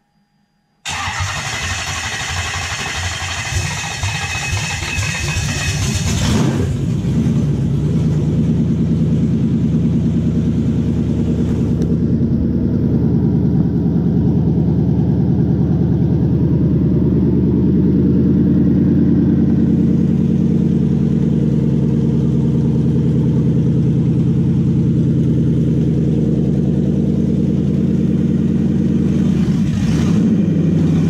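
Toyota 1UZ-FE 4.0-litre V8, on a newly set-up aftermarket ECU with individual ignition coils, starting for the very first time from cold. It starts suddenly about a second in, sounds harsh and hissy for the first five seconds or so, then settles into a steady idle; the tuner judges the cold start to still need tuning work.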